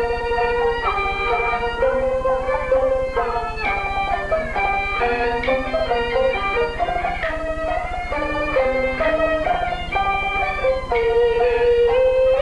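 Peking opera accompaniment in slow tempo (manban): the high-pitched jinghu fiddle leads a melody of stepping notes, backed by plucked strings.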